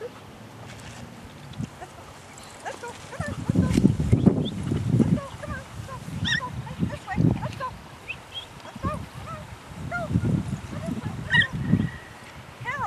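A group of dogs and puppies barking and yelping at a distance, in short scattered calls, with bursts of low rumble in between.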